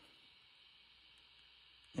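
Faint, steady hiss from a Quansheng UV-K5 handheld radio's speaker, turned down low. This is the receiver's open-squelch noise: the squelch is set to zero, so nothing mutes it.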